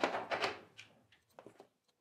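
A brief murmur of voice, then a few faint light clicks and knocks of small items being picked up and set down on a kitchen countertop.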